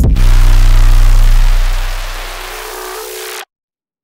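The closing bars of an electronic music track: a loud held chord with deep bass under a wash of hissing noise, fading away from about a second and a half in. About three and a half seconds in it cuts off abruptly to silence.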